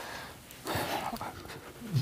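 A person's noisy breathing: a soft breath at the start, then a stronger, hissing breath about half a second in.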